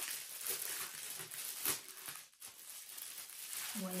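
Crinkly packaging being handled and unwrapped: irregular crackling and rustling, with a short lull a little past the middle.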